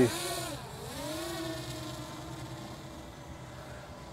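MJX Bugs MG-1 quadcopter's brushless motors whining in flight. The pitch dips about half a second in, rises again, and then holds steady as the drone heads out.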